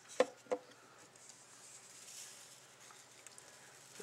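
Two light knocks as a small plastic ink bottle is set down on a tabletop, then a faint, soft patter of embossing enamel granules being poured over a chipboard piece.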